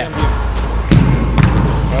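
A few thuds of a football being kicked and struck, the loudest about a second in.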